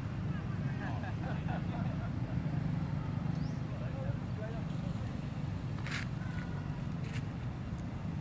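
Outdoor background sound: a steady low rumble with faint, indistinct voices of people in the distance. Two sharp clicks about a second apart come near the end.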